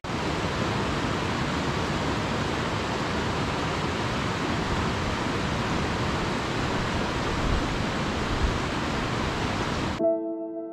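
Mountain river running fast over rocks: a steady, even rush of water.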